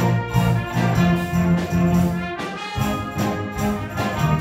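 A student jazz rock band playing live: brass chords from trumpets, trombones and tenor saxophones over an electric bass line and drum kit. The band breaks off briefly about two and a half seconds in, then comes back in.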